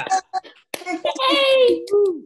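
Several people cheering and calling out over a video call, with a few hand claps and one long held high call.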